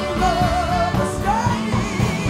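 A female lead singer holding a note with wide vibrato, then sliding up into her next phrase, over a live rock band playing steadily behind her.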